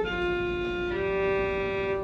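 Violin played with long, straight bow strokes: one held note, then a change of bow to a second held note about a second in, as the bow arm moves to another string level.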